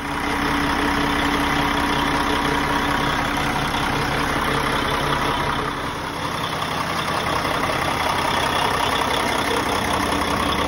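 Paccar MX-13 inline-six diesel engine in a semi-truck, idling steadily.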